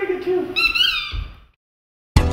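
A high-pitched person's voice calling out, its pitch gliding up and down, stopping about three-quarters of the way through.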